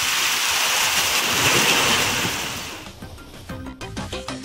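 Heavy rain pouring down, a steady hiss that fades out about three seconds in. A short music jingle starts near the end.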